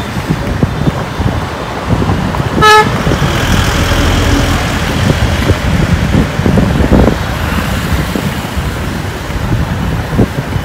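A single short vehicle-horn toot a little under three seconds in, over steady road and wind noise from moving through traffic.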